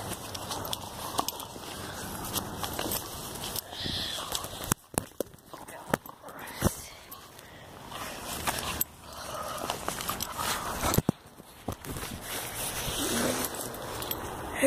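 Footsteps through grass and rustling, knocking handling noise from a phone being carried and swung, with scattered sharp clicks throughout.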